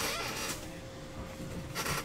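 Stack of trading cards sliding and rubbing against each other as it is handled and squared up, with a brief louder rustle near the end.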